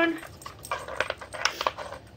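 Light hard-plastic clicks and knocks from a dog nosing the sliding bone-shaped lids of a plastic treat-puzzle toy. There are about five short taps, starting about half a second in.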